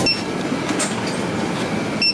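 Busy convenience-store ambience, a steady dense mix of noise, with a short high electronic beep at the start and again at the end, typical of a checkout barcode scanner.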